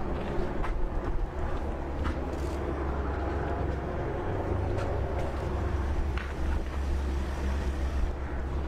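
Steady low rumble of city street noise, with a few scattered clicks and knocks.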